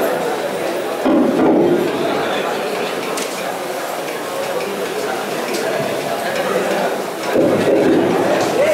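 People talking in a large hall: voices coming through a stage microphone and the room. They are louder about a second in and again near the end.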